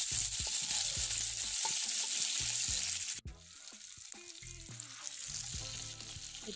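Sliced onions sizzling as they fry in hot oil in a kadai, stirred with a spatula. About three seconds in the sound cuts off abruptly and the sizzle goes on more quietly.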